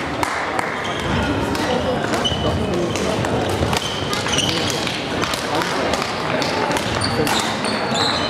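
Busy badminton hall ambience: background voices under repeated sharp clicks of rackets striking shuttlecocks on the courts, with a few brief high squeaks from shoes on the wooden floor.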